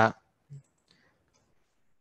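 A man's voice ends a word. Then comes a brief low hum and a few faint clicks over near-quiet room tone.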